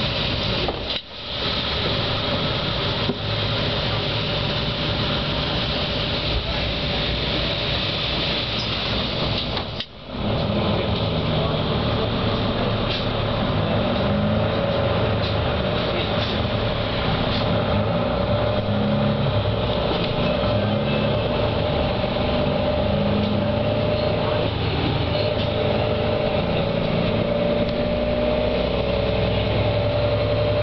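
Inside a moving city bus: the steady running noise of the bus, with a faint tone that rises a little near the end. The sound drops out briefly twice, once about a second in and once about ten seconds in.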